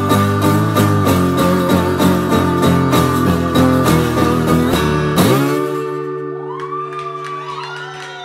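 Acoustic lap slide guitar played solo: fast, rhythmic strumming, then about five seconds in a final strum left ringing while notes glide in pitch under the slide bar, fading near the end.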